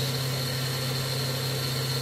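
Milling spindle with a 1200 W motor and BT30 headstock running steadily at about 7,900 RPM with a 50 mm face mill fitted. It gives a constant hum and a thin high-pitched whine, and cuts off suddenly at the end.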